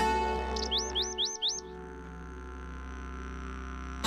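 Plucked-string music fades out while a bird gives four quick rising-and-falling chirps about a second in. Then comes a quieter steady ambience with a faint high steady tone.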